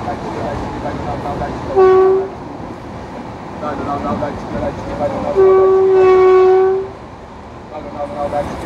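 WAP-4 electric locomotive horn sounding one short blast and then, after a pause of about three seconds, one long blast of about a second and a half. Underneath runs the steady rumble of the LHB coaches' wheels on the track at speed.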